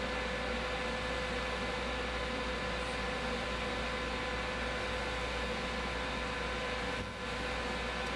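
Ultrasound cavitation body-contouring machine running with its handpiece held on the skin: a steady hum and hiss with a faint steady tone, dipping briefly about seven seconds in.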